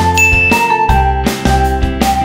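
A single bright ding, a short high chime of an editing sound effect, rings out just after the start and fades within a second. Under it runs light acoustic-guitar background music.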